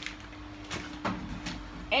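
A steady low hum from a kitchen appliance, with a few light knocks and clicks of kitchen handling.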